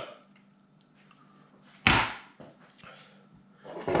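Glassware set down on a stone countertop with one sharp knock about two seconds in, followed by a few faint clicks.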